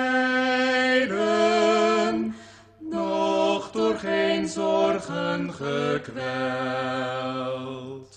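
A voice singing a slow Dutch evening song, one long held note after another, with a short breath about two and a half seconds in.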